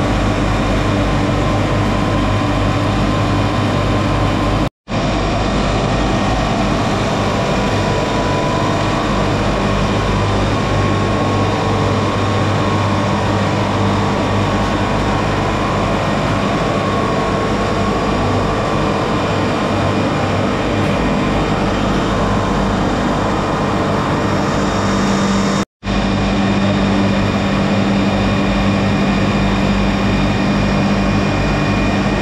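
Olive oil mill machinery running steadily: electric motors, olive conveyors and processing machines making a loud continuous hum with several constant tones. The sound cuts out for a moment twice.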